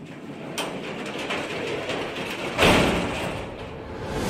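Noisy, atmospheric intro sound effect that fades in from silence and builds, with scattered clicks and a loud whoosh-like swell about two and a half seconds in, leading into the intro music.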